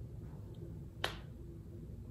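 A single sharp pop about a second in, against quiet room tone: a shoulder joint cracking as the arm is raised.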